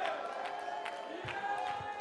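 Soft worship music of long held chords, with scattered voices and a few claps from a congregation praising.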